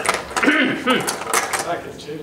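Go stones clicking and clattering as a hand rummages in the box of stones, with voices talking over it.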